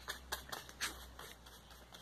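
Faint, irregular light taps and scratches of a paintbrush working paint onto a plastic PET-bottle leaf and knocking against the paint jar.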